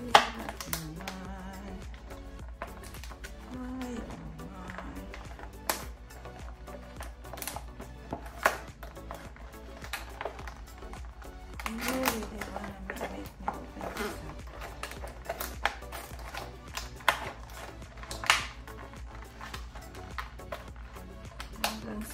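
Scissors cutting into a sealed clear plastic blister pack, giving sharp snips and plastic crackles every second or two, the loudest right at the start. Background music plays throughout.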